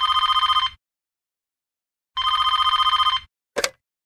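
Telephone ringing: two warbling electronic rings, each about a second long and two seconds apart, followed by a short click near the end.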